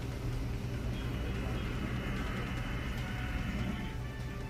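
Steady low rumble of a ship's engine with rushing wind and water noise, heard from a vessel's deck at sea as a water cannon jet strikes it.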